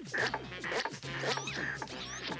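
Cartoon sound effect of a hand pump worked in quick, even strokes, about three a second, with a zipping, whooshing sound on each stroke, over background music.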